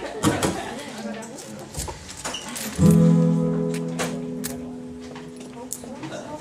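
Acoustic guitar: a single chord strummed about three seconds in, left to ring and slowly fade. Before it come a few faint clicks and handling noises.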